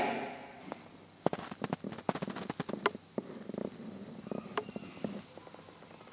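A pause in the talk filled with scattered sharp clicks and crackles, thickest about a second into the pause and thinning out over the following seconds.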